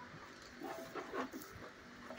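A dog making a few short, quiet vocal sounds in quick succession about halfway through.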